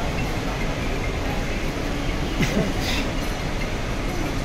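Luggage trolley wheels rumbling steadily as the trolley is pushed across a terminal floor, with a brief voice and a couple of short hissy noises partway through.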